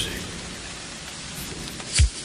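A steady, even hiss of noise with no voice or beat in it.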